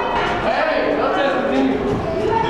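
Several young people's voices calling and shouting over one another, some calls drawn out and held, without clear words.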